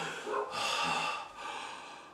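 A man's heavy, gasping breaths through the open mouth, about three rough breaths that get fainter, from the burn of an extremely spicy hot dog.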